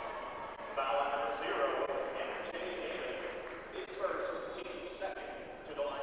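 Indistinct voices of players and spectators echoing in a basketball gymnasium, with a few short sharp sounds among them.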